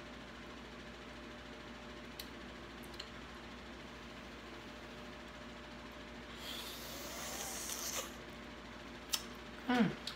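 Quiet room tone with a faint steady hum and a couple of small clicks, then, about six and a half seconds in, a soft hissing slurp lasting about a second and a half as food is taken into the mouth and eaten. A sharp click follows just before a hummed 'mm'.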